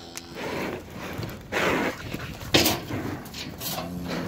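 Heavy breathing close by: several loud, breathy puffs, irregular and about a second apart.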